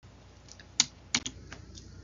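Two sharp clicks about a third of a second apart, with a few fainter ticks around them, from a computer's keys or buttons as the presentation advances to the next slide.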